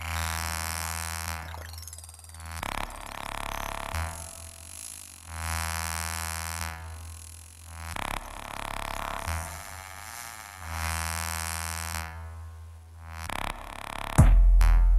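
Electronic music played on a Korg Volca Sample: a low, buzzing drone rich in overtones that swells and fades in repeating waves roughly every two to three seconds.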